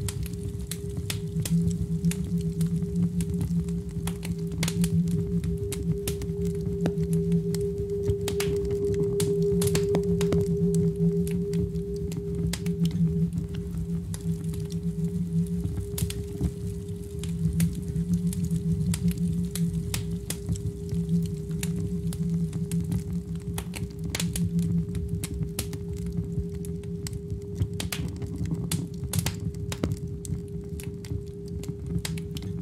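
A sustained low drone from a laptop-and-controller setup: two steady held tones, a lower one that swells and eases and a thinner higher one, with scattered soft clicks and crackles throughout.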